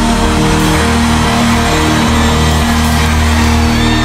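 Live gospel band music in an instrumental passage: held chords over a bass line that changes note about once a second, with no singing until the voice comes back right at the end.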